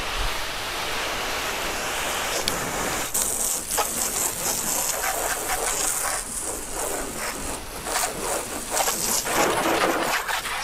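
Garden hose spray nozzle rinsing water over a car's paint: a steady hiss of spray and splashing on the body panels, growing louder and more uneven from about three seconds in as the stream moves across the car.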